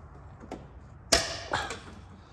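A car door latch clacks open once about a second in, sharp and metallic, with a brief ring after it and a smaller knock just after.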